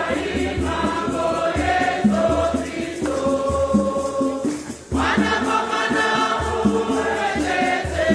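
A large choir singing a Shona Catholic hymn in many voices, over a regular low drum beat with rattles. The singing drops out briefly just before five seconds in, then the voices come back in together.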